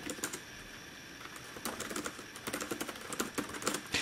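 Typing on the Acer Aspire Switch 11's detachable keyboard dock: a run of light key clicks, a few at first, then after a short lull quicker and steadier through the rest.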